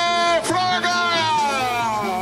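A voice drawn out in long held notes, the last one gliding down in pitch, with music under it.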